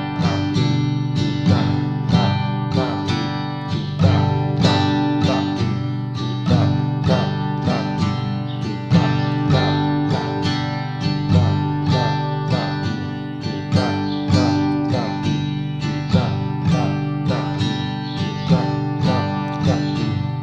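Acoustic guitar strummed in a simple pop-rock rhythm, one stroke down, two up, one down, repeated at a steady tempo on a held chord.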